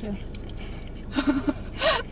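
A woman laughing in short breathy bursts, starting about a second in and again near the end, over a steady low hum.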